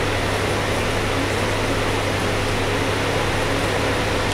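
A steady low hum with an even hiss over it, unchanging throughout: steady machine background noise, such as a running air conditioner or fan.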